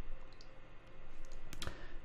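Quiet room tone with a few faint clicks, the clearest about one and a half seconds in.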